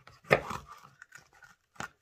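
Kitchen knife cutting through mini sweet peppers on a paper-towel-covered board: one crisp cut about a third of a second in that trails off, then a short sharp knock of the blade near the end.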